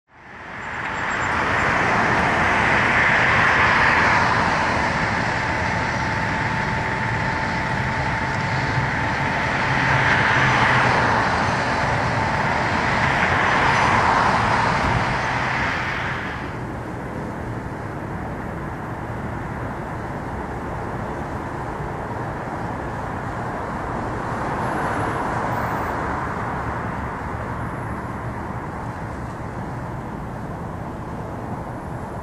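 Outdoor vehicle and traffic noise, with several passing swells and a steady whine in the first half. About halfway through the sound changes abruptly and turns quieter and duller.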